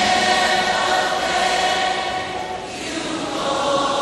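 Background gospel music: choir voices holding long, sustained notes, with a brief dip in loudness past the middle.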